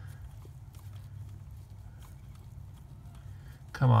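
Faint clicks and taps of a loosened 12 mm bolt being turned out by gloved fingers, over a steady low hum.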